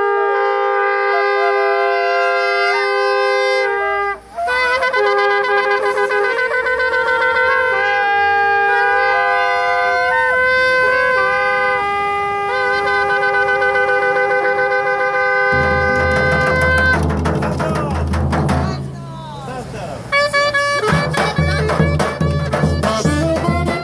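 Several long twisted-horn shofars blown together in long, sustained blasts, their held notes at different pitches overlapping, with a short break about four seconds in. In the last seconds a big drum starts beating and the band begins a lively tune.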